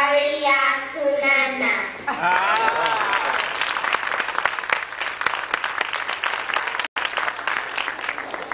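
Young children's voices finishing a chanted recitation, then, about two seconds in, an audience clapping and applauding. The sound drops out for an instant near the end.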